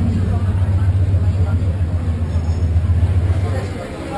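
A vehicle engine running close by as a steady low rumble that fades just before the end, under the chatter of a crowd of people.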